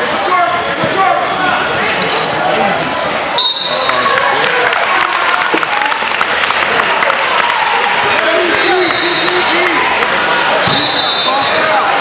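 A basketball bouncing on a hardwood gym floor, with a crowd's and players' voices throughout and an abrupt jump in the sound about three and a half seconds in.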